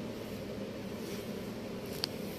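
Steady low machinery hum aboard a cargo ship, even throughout with no distinct knocks or voices.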